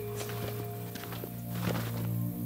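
Footsteps on a dirt road, a few heavy steps at an uneven pace, the loudest near the end as the walker comes close and stops, under a film score of held low notes.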